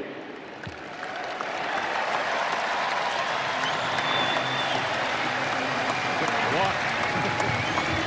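Ballpark crowd applauding, swelling over the first couple of seconds and then holding steady.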